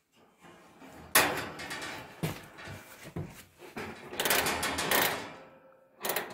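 Sheet-metal cabinet of a kerosene heater scraping and clunking as it is slid down over the burner and fitted back into place. The scraping starts suddenly about a second in, with a few knocks along the way, and dies away near the end.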